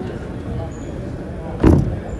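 Indistinct voices in a gymnasium, with one loud, short thump about one and a half seconds in.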